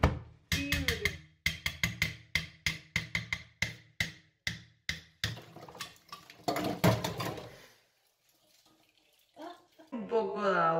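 A rapid, uneven run of sharp knocks, several a second, that stops about eight seconds in, followed by near silence.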